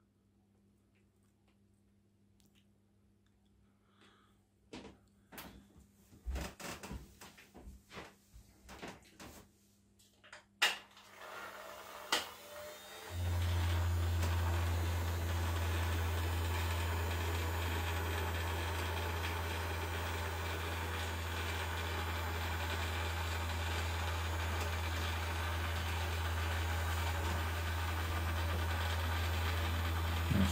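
A few clicks and knocks, then about 13 seconds in a steady low hum with a hiss over it starts suddenly and holds even: the small battery-powered motor of a home-made flapper paddle boat running as it sits in bath water.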